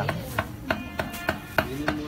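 A regular run of sharp taps from food preparation, about three a second.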